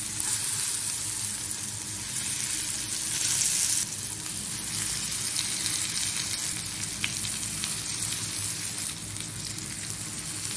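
Spice-coated brinjal (eggplant) pieces sizzling as they shallow-fry in hot mustard oil, with pieces laid into the pan one after another. The sizzle is loudest about two to four seconds in and then settles to a steady hiss.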